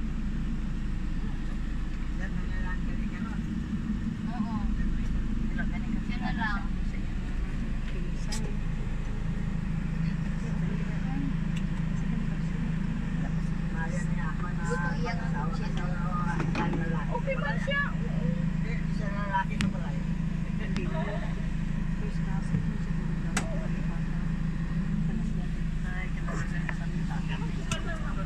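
Steady low engine and road rumble heard from inside a moving passenger vehicle, with faint, indistinct voices over it.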